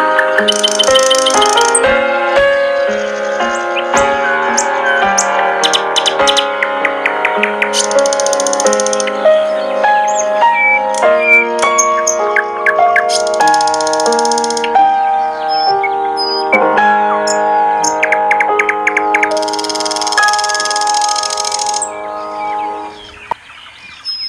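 Gentle piano melody with bird chirping mixed over it, in four short bursts of quick high trills. The music fades out near the end.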